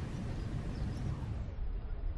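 Steady low background rumble with a faint hiss.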